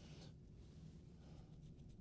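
Near silence: low room hum with a few faint, short rustles of Bible pages being handled, about a second in.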